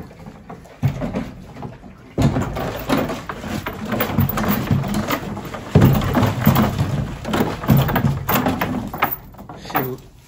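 Water sloshing and splashing in a plastic bucket as a yearling Percheron filly plays in it with her muzzle, starting suddenly about two seconds in and going on in irregular splashes.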